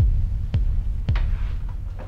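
Horror-film sound design: deep, heartbeat-like thuds over a low rumble, three of them about half a second apart, the third coming a little after a second in.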